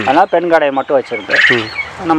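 Farmed quail calling, with one louder, high call about one and a half seconds in.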